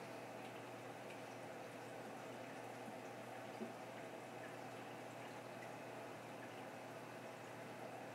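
Faint, steady bubbling and trickling of circulating water in a Red Sea Reefer 250 reef aquarium, over a low steady hum.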